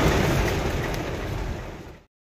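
Heavy rain drumming on a car's roof and windshield, heard from inside the cabin as a steady rushing noise that fades out over the last second.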